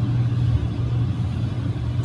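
A steady low hum with a faint hiss above it, and no voice.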